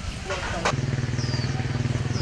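An engine cuts in abruptly just after a sharp click, about two-thirds of a second in, then runs at a steady low idle with a fast, even pulse.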